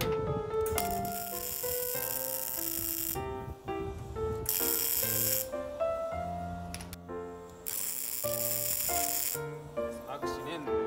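Background music with a melody and bass line. Over it come three abrupt bursts of crackling hiss, each lasting one to about two and a half seconds, from a MIG welder tacking steel reinforcement plates onto a car's rear subframe.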